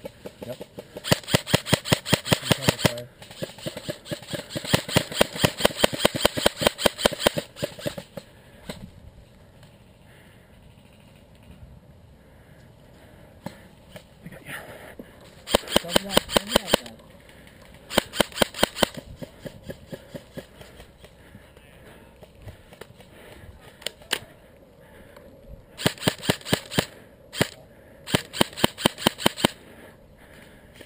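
Airsoft rifle firing in full-auto bursts: rapid, evenly spaced clicking rattles lasting one to three seconds each, about six bursts with pauses between. The longest bursts come in the first eight seconds.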